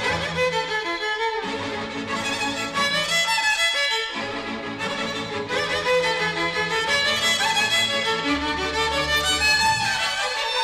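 Instrumental interlude of a Tamil film song, with violins carrying the melody over a bass line and accompaniment.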